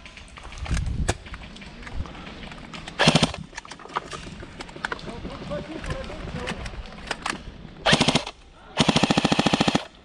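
Airsoft gun firing full-auto bursts: a short burst about three seconds in, another near eight seconds, and a longer burst of about a second just before the end, each a fast, even rattle of shots.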